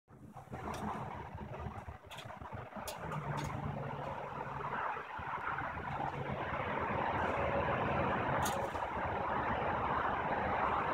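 A few sharp metallic clicks as the wire cage trap is handled and its door worked, over a steady rumble and hiss that slowly grows louder.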